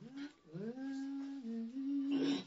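A lone voice singing a slow, unaccompanied tune without words, sliding up into a long held note, then stepping down and back up in pitch.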